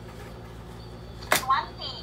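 A quiet room with a low steady hum, broken about a second and a half in by one sharp click, followed at once by a short, high-pitched word from a young child.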